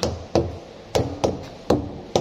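A metal tool knocking against a truck tyre: five sharp knocks in two seconds, loosely in pairs.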